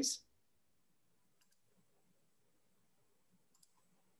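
Faint computer mouse clicks over near silence, two quick pairs of clicks about a second and a half in and again near the end, while the slide is brought up for screen sharing.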